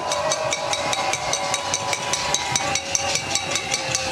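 Demonstration crowd banging rhythmically on pots and pans, a quick, even clatter of about six strikes a second, with long steady whistle-like tones sounding over it.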